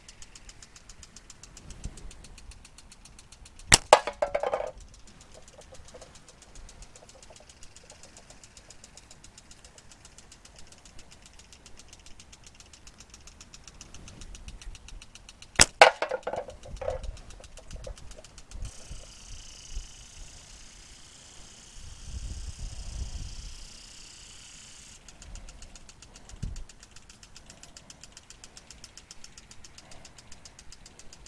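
Two slingshot shots about twelve seconds apart, each a sharp snap of the released bands followed by a brief ringing.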